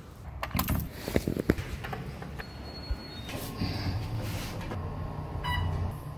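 Clicks and knocks of a glass door being handled, then the steady low hum of an elevator car running, with a short chime near the end.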